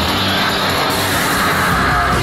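Trailer sound design: a loud rushing noise riser that swells and brightens toward the end, building to a transition.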